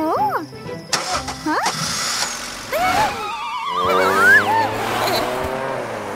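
Cartoon soundtrack: background music with wordless excited voices and swooping, wavering cries, over a snowmobile motor running steadily in the second half.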